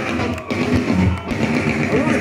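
Industrial metal band playing live, loud through a concert PA: a heavy electric guitar riff opening the song, with two short breaks in the riff about half a second and just over a second in.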